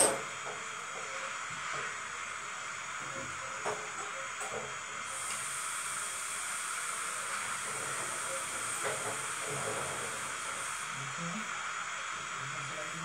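Steady background hiss with a sharp click at the start and a few faint ticks; a higher, thinner hiss joins in from about five seconds in until about eleven seconds.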